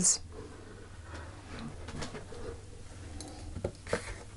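Quiet pause with a low steady hum: soft handling sounds of hands on a cloth-covered table, ending in a couple of light taps as an oracle card is picked up.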